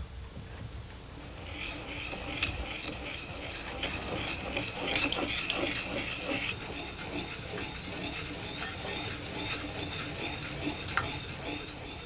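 Brush working glaze onto a raku tea bowl: a continuous scratchy rustle of many small rubbing strokes.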